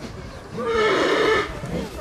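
A horse whinnies once, a loud wavering call lasting about a second that starts about half a second in.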